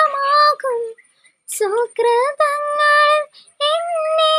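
A young woman singing a Malayalam Christian devotional song unaccompanied, in long held phrases, with a short silent pause about a second in before the next phrase.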